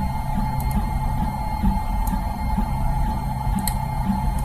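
Low-cost Tronxy 3D printer running a print: a steady hum from its motors and fans, with a constant mid-pitched whine over it.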